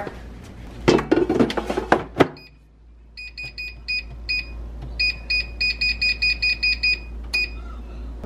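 An air fryer basket rattles as it slides into the fryer and latches with a sharp click about two seconds in. Then the air fryer's touch panel beeps over and over, short high beeps in quick runs, as its buttons are pressed to set it.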